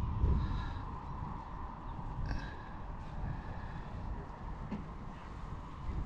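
Low, steady outdoor background noise with a faint steady tone, and a brief faint higher sound about two seconds in.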